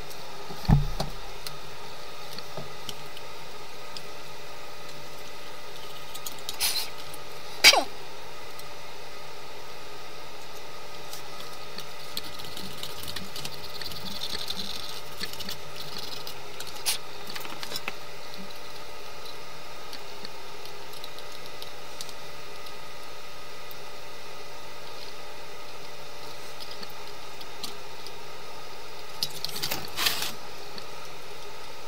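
Steady workshop background hum broken by a few isolated clicks and knocks from handling the soldering iron, tools and the open metal chassis of a vintage receiver: a low thump about a second in, the sharpest click about eight seconds in, and a few lighter ones later.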